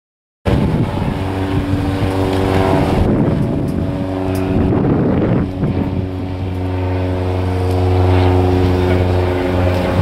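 Light aircraft piston engine and propeller droning steadily, growing a little louder about two thirds of the way through.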